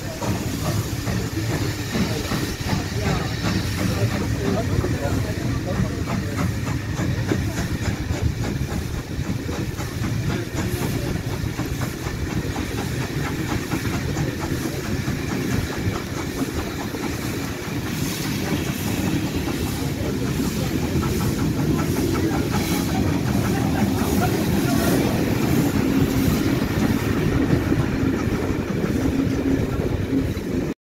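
Steam-hauled passenger train heard from an open coach window as it pulls out and rolls through a station: the steady clatter of wheels over rail joints and points, with steam hissing, growing a little louder toward the end.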